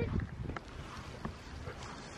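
Faint low wind rumble on the microphone, with a couple of faint clicks.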